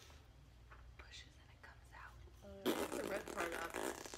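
Faint handling of plastic candy tubes and packaging, then a loud burst of a person's voice about two-thirds of the way in.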